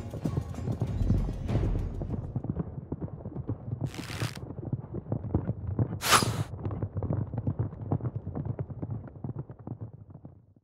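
Horses galloping, a fast, dense run of hoofbeats, with two short rushing noises about four and six seconds in.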